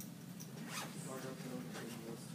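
Two short rustling scrapes in a classroom, about a second apart, with soft murmured speech between them.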